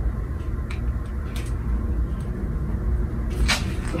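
Steady low rumble with a few light clicks and taps from a small plastic specimen tube and transfer pipette being handled, the sharpest click about three and a half seconds in.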